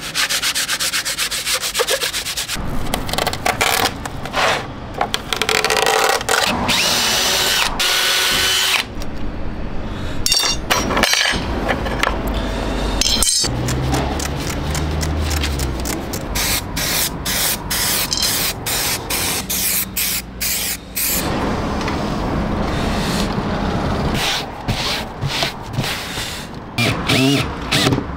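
A sequence of workshop sounds on a painted plywood panel. It opens with quick strokes of hand sanding with a sanding block. A few seconds in, a cordless drill-driver whirs as it works the screws of an aluminium LED channel. Later comes a hiss that fits spray adhesive, then hands rubbing and smoothing hessian fabric flat.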